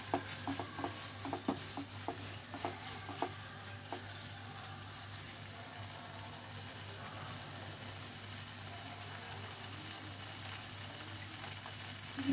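Paneer and potato pieces cooking in a nonstick frying pan, stirred with a silicone spatula for the first few seconds with soft scraping clicks, then left to sizzle gently and steadily.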